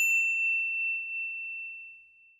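A single bright bell ding sound effect, struck just before the start, ringing on one high tone that fades away over about two seconds.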